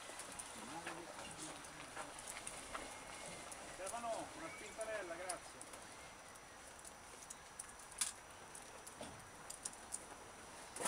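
Faint voices talking, loudest about four to five seconds in, over a low outdoor background hiss, with a sharp click about eight seconds in.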